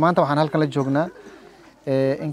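A man speaking for about a second, then a short pause in which a faint, low dove coo is heard.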